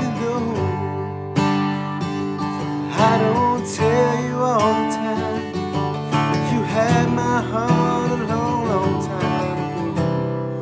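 Acoustic guitar strummed through a G, D, E minor, D, C, D chord progression, with a man singing over it from about three seconds in.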